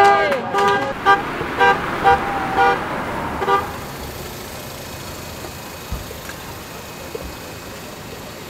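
A car horn sounding a run of short toots, about two a second, that stop about three and a half seconds in. Steady street background follows.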